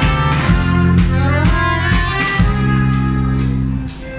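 Live band playing a lively tune on acoustic guitar and violin over drums, with a strong bass and regular drum beats; the music dips briefly near the end.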